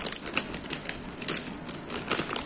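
Plastic packaging crinkling and crackling as it is handled, in a quick irregular run of sharp clicks.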